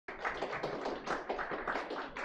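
Audience applauding, with many separate claps heard in quick succession.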